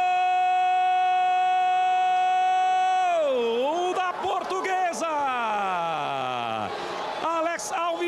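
A Brazilian TV football commentator's drawn-out 'goooool' call for a penalty goal, one loud cry held at a steady pitch for about three seconds. His voice then dips and slides down in a long falling glide.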